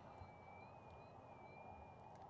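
Near silence with a faint, thin high whine that wavers slightly in pitch: the distant electric motor and propeller of an XFLY Glastar RC airplane.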